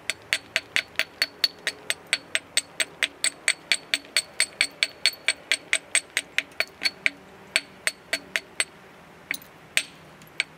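A copper-headed MegaBopper tapping rapidly and lightly along the edge of a thick stone biface, about five sharp, slightly ringing clicks a second. The taps pause briefly near the end, then a few more follow.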